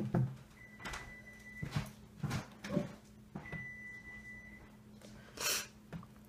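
Small glass nail polish bottles and their caps being handled, giving a few separate light clicks and knocks spread over several seconds, with a faint steady hum underneath.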